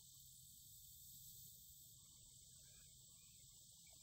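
Near silence: a faint, steady high-pitched chorus of crickets.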